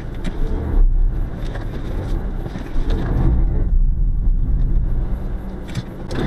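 Car engine and road noise heard from inside the cabin: a steady low rumble.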